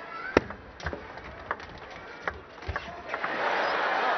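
Table tennis ball being struck by rackets and bouncing on the table in a short rally: a sharp click about a third of a second in, then about five lighter ticks at uneven gaps over the next two and a half seconds.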